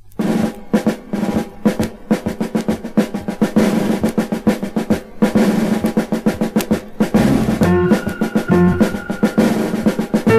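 Opening music of a 1970s children's record: a fast snare drum roll with drums, starting abruptly, joined about seven seconds in by stepped bass notes and a higher melody.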